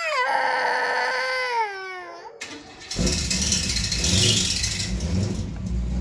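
A long wailing cry, wavering and slowly falling in pitch, for about two seconds. Then, about three seconds in, a car engine starts and keeps running with a steady low rumble: the KITT-replica Pontiac Trans Am's V8 being started in the transporter.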